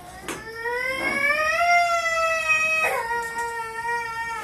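A young child's long wailing cry, high and drawn out. It rises in pitch, drops to a lower held note about three seconds in, and carries on.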